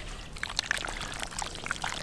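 Wet squelching of hands kneading marinated chunks of wild boar meat in a steel tray, in quick irregular squishes and smacks.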